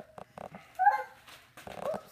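A toddler's short wordless vocalizations, squeal-like with sliding pitch: the loudest about a second in, a shorter one near the end, with a couple of light knocks before them.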